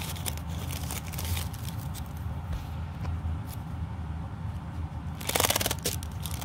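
Pleated tissue-paper fan fidget rustling and crackling as it is handled, with scattered small clicks. Near the end comes a brief burst of rapid, fluttering ticks as the paper pleats riffle.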